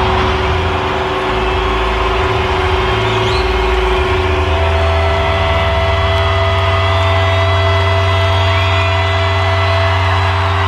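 Loud crowd cheering over steady drones from electric guitars left ringing through their amplifiers as the song ends, with a few whistles from the crowd.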